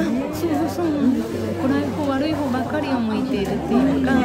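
A woman's voice speaking steadily, with the chatter of other people in a large room behind it.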